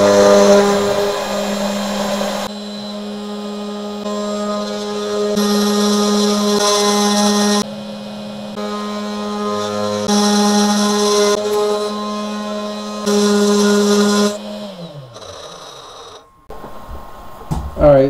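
Desktop CNC router spindle running with a steady whine while its end mill cuts aluminum, the cutting noise coming and going in stretches. About fifteen seconds in the spindle winds down, its pitch falling away.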